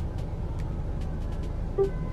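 Low, steady hum of a Volvo's engine and running gear heard from inside the cabin as the car creeps into its parking space under automatic park assist, with a few faint clicks.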